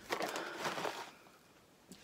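Foil crisp packet crinkling in the hands for about a second. A single light click follows near the end.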